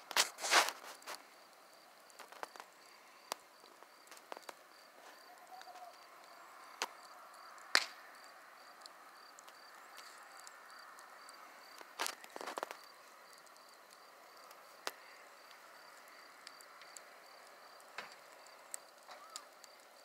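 Wood bonfire crackling with scattered sharp pops, a few louder ones near the start and about twelve seconds in, over crickets chirping in an even, repeating rhythm.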